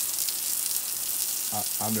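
Steady hiss of a water jet spraying onto wet paving slabs, washing black radiator sludge off the flags.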